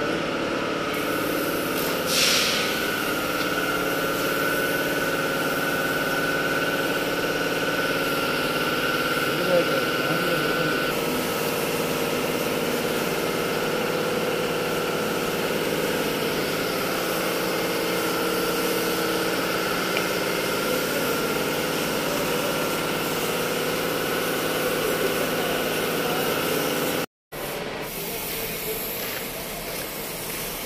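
Compressed-air paint spray gun hissing steadily as it sprays paint onto car body panels, over a steady mechanical hum. The sound breaks off for a moment near the end and picks up again a little quieter.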